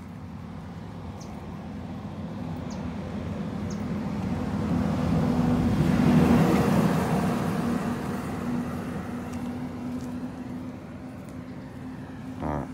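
A motor vehicle passing by: a low engine hum that builds slowly to its loudest about six seconds in, then fades away.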